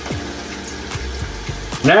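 Tap water running steadily from a kitchen faucet into the emptied plastic juice bag of a wine kit, rinsing the leftover juice residue out of it.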